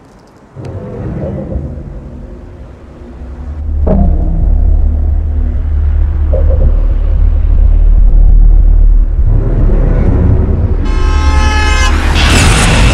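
Horror film score and sound design: a deep rumbling drone swells in about four seconds in and holds loud, and a sudden shrill horn-like blare cuts in near the end.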